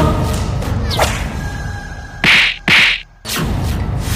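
Edited drama sound effects laid over a TV serial's background score: two loud swishes about half a second apart, then a brief silence before the music comes back in.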